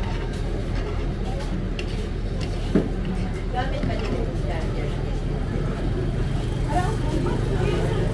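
Low, steady hum of vehicle engines idling, with people talking in the background and a single short knock about three seconds in.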